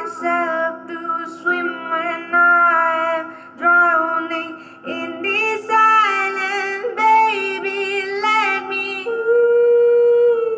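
A woman singing a slow ballad into a handheld karaoke microphone, with sustained, sliding notes, ending on a long held note about nine seconds in.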